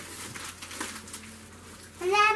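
Faint rustling of wrapping paper over quiet room sound, with a few soft ticks.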